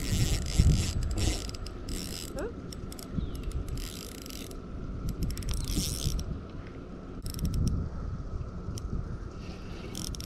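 Mitchell 300 spinning reel being cranked in repeated spurts, its gears whirring as line is wound in against a hooked grass carp.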